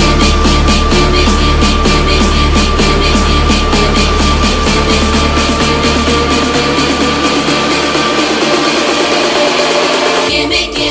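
Electronic dance music with a steady, loud beat. The deep bass fades away over the second half while the beat comes faster, building up.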